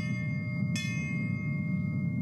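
A polished ceremonial fire-service bell rung in slow single strikes, tolled in memory of firefighters who died. The ring of a strike just before is still sounding when a fresh strike comes about three-quarters of a second in, its clear ringing notes dying away slowly. A steady low background rumble runs underneath.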